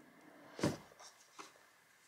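Cardboard lid of an iPad box lifted off: one short rustle about half a second in, then two light taps.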